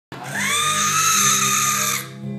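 A baby's long, high-pitched squeal that rises at first, then holds steady for nearly two seconds, with faint music underneath.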